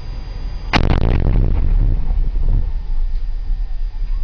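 Controlled detonation of a roadside IED by an EOD team: a single sharp blast about a second in, followed by a long low rumble that slowly dies away. Heard from inside a Humvee.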